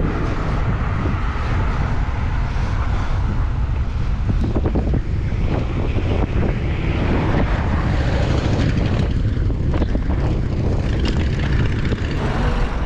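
Wind buffeting the microphone of a camera on a moving bicycle, a steady low rumble, with road and traffic noise under it.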